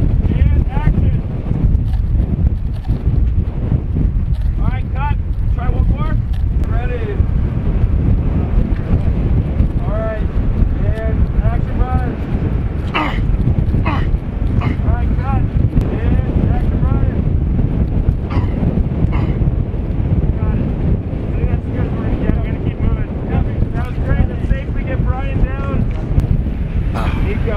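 Strong wind buffeting the microphone, a steady low rumble, with indistinct voices talking over it. A couple of sharp knocks come about halfway through.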